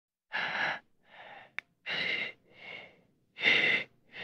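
A person's laboured, wheezing breathing, staged as the dying breaths of an old man. Three loud, raspy breaths alternate with quieter ones in a slow, uneven rhythm, with a short click after the first pair.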